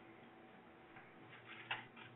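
Near silence: faint room tone, with a brief faint sound near the end.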